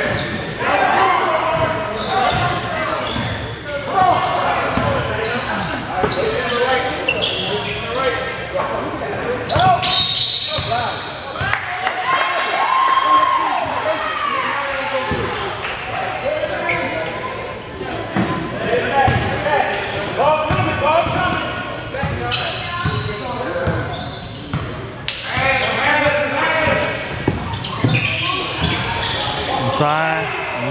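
A basketball bouncing on a hardwood gym floor amid players' and spectators' voices and calls, echoing in a large gymnasium.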